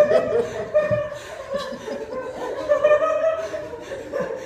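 Women laughing, a long run of high-pitched giggling laughter.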